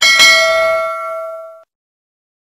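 Bell-ding sound effect of a notification-bell button being clicked: a bright bell struck twice in quick succession rings out and dies away, then cuts off suddenly after about a second and a half.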